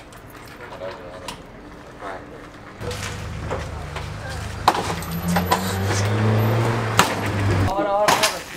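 A vehicle engine running steadily in a low hum from about three seconds in, stopping suddenly shortly before the end, with a few sharp knocks and faint voices around it.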